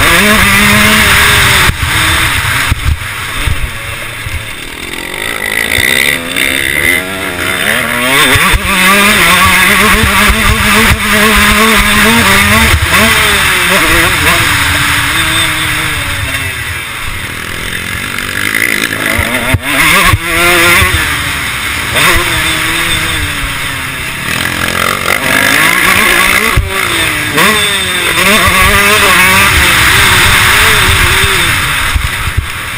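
2012 KTM 150 SX single-cylinder two-stroke motocross engine under hard riding, its pitch climbing through the gears and dropping off again every few seconds as the throttle is opened and shut around a dirt track.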